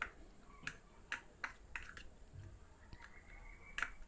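A spoon mashing water-soaked chapati in a disposable plate, making faint, irregular clicks and taps as it strikes and scrapes the plate. The loudest comes near the end.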